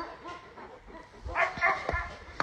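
A dog barks briefly in the second half, followed by a click near the end.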